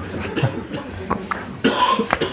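A person coughing, a short harsh cough near the end.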